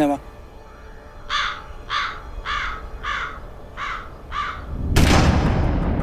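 A bird cawing six times, about one caw every 0.6 seconds, then a sudden loud explosion about five seconds in, with a deep sound that carries on after the blast.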